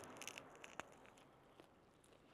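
A bite into a nori-wrapped rice onigiri, a soft crackle fading over the first half-second, followed by faint clicks of chewing.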